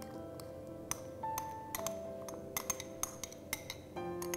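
Metal spoon clinking and scraping against glass bowls in a quick, irregular series of sharp ticks as thick tamarind marinade is spooned out, over soft background music.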